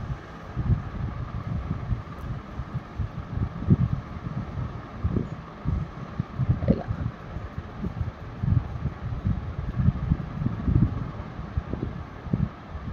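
Air buffeting the microphone: an irregular low rumble of gusts over a faint steady hiss.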